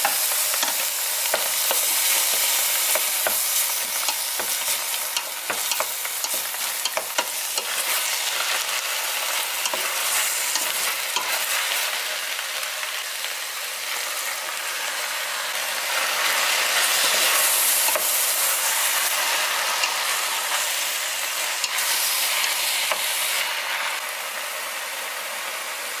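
Beef and seaweed sizzling as they sauté in a stainless steel pot, stirred with a wooden spoon that knocks and scrapes against the pot. Partway through, a little rice water goes into the hot pot and the sizzle grows louder and hissier.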